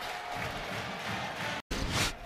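Stadium crowd cheering after a touchdown, a steady wash of noise that drops out for an instant near the end.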